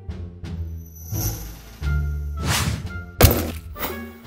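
Cartoon hammer knocks on a wooden stand over light background music, the sharpest and loudest knock coming just after three seconds.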